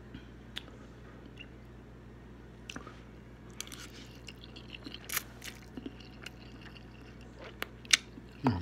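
A person eating spicy instant noodles: scattered wet mouth clicks and smacks of chewing, with a denser flurry of slurping as a forkful of noodles is sucked in about four seconds in.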